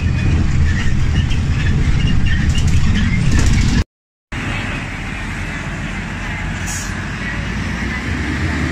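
Steady low rumble of a moving bus's engine and road noise heard from inside the cabin, cut off abruptly about four seconds in. After a brief silence, quieter steady roadside traffic noise with buses going by.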